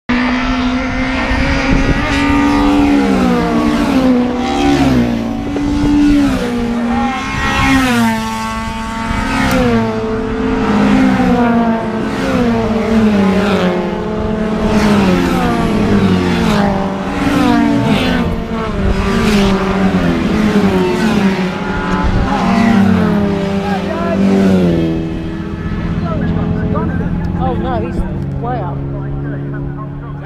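Racing car engines at full throttle, an orange Mini among them, their pitch repeatedly climbing and dropping with gear changes as the cars run down the straight past the listener. The sound fades somewhat after about 25 seconds as the cars draw away.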